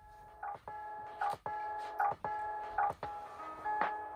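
Background music starts: held chords that change every half second or so, over a light clicking beat about every 0.8 s.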